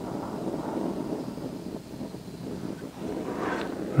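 Small butane crème brûlée torch burning with a steady hiss of flame as it scorches carved wood.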